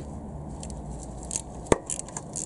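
Ratchet and hex socket working a corroded exhaust-manifold heat-shield bolt loose: a few faint metallic clicks, then one sharp click near the end.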